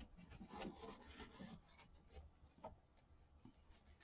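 Faint rustling and rubbing of quilt batting being handled and trimmed with small scissors, the rustle strongest in the first two seconds, then a few soft clicks.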